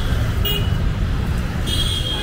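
Road traffic running steadily, with two brief high-pitched horn toots: one about half a second in and one near the end.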